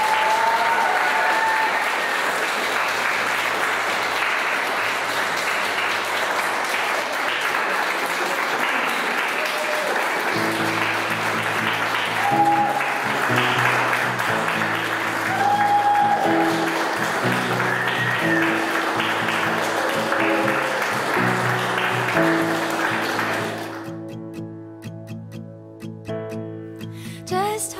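Guests applauding, with a few voices calling out. Guitar music comes in about ten seconds in, and the applause fades away near the end, leaving the music.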